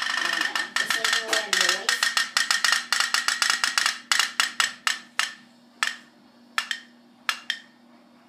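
Candle-heated pop-pop boat's tin boiler popping through its twin stern tubes. A fast rattle of pops slows into sparse single pops and dies out near the end as the candle's heat runs out.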